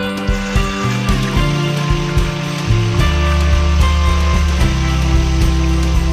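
Background music with steady held notes over hot cooking oil sizzling in a wok. The sizzle starts within the first second and runs on as a steady hiss.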